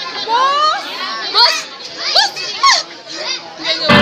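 Children shouting and squealing in a run of high calls that sweep up and down, several in quick succession. Loud music starts suddenly right at the end.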